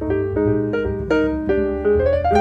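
Small jazz group playing, with acoustic piano to the fore in a quick run of notes and chords and a double bass sounding underneath.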